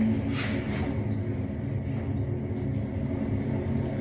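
A steady low hum, with a faint brief rustle about half a second in.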